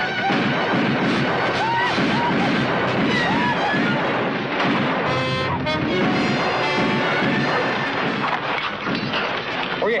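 Film battle soundtrack: orchestral score under a din of many men's yells and whooping cries, with scattered gunshots. The cries are thickest in the first few seconds.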